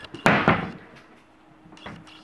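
A cabinet door being handled: a sharp click, then a short rushing knock that dies away within about half a second, and a second, fainter click near the end.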